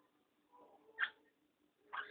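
Faint scratching of a calligraphy pen on paper while writing Arabic script: two short, sharp strokes about a second apart.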